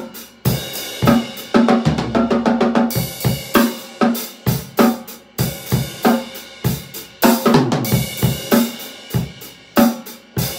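Acoustic drum kit played: snare, bass drum, hi-hat and cymbal strikes, with a fast roll about two seconds in. The snare is one that the drummer says is messed up.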